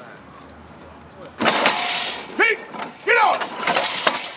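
Short shouted calls from men's voices, starting about a second and a half in after a quieter opening, the first with a burst of noise.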